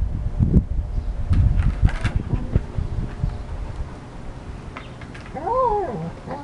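Two dogs play-fighting. Low growls and scuffling fill the first few seconds, then settle, and a short whine rises and falls near the end.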